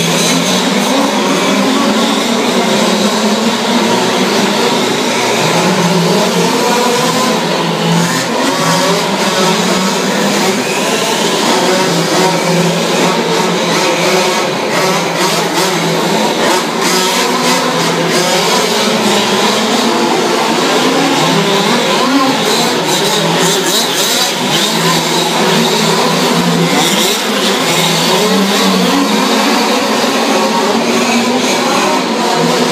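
Several large-scale (1/5) radio-controlled off-road trucks racing, their small Zenoah two-stroke petrol engines buzzing and revving up and down over one another at once.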